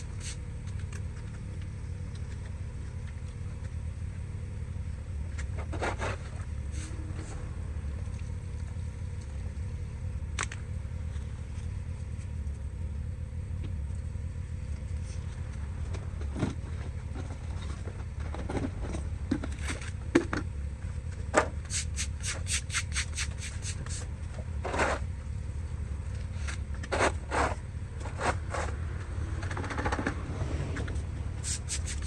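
Stiff-bristled broom scraping wet grit and debris across concrete paving slabs in intermittent strokes, with a quick run of short strokes a little past the middle, over a steady low rumble.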